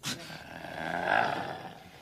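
A drawn-out, growling vocal roar that swells to its peak about a second in and then fades away.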